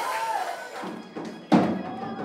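Drum kit struck in single accents as the band's music drops away: a softer hit a little under a second in, then a hard, ringing hit about a second and a half in.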